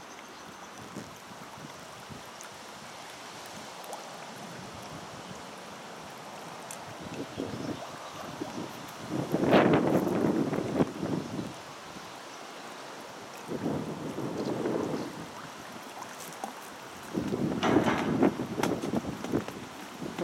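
Wind buffeting the microphone over a steady hiss of wind and choppy water, swelling into louder gusts about halfway through and again near the end.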